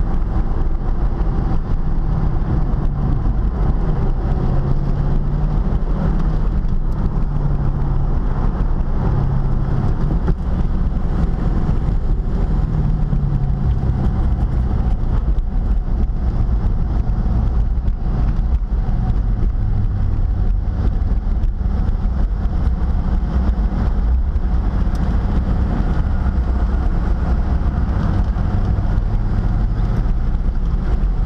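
C5 Corvette's 5.7-litre V8 heard from inside the cabin, running at low to moderate revs with its pitch stepping up and down, then settling lower in the second half as the car slows. Steady road and wind noise runs under it.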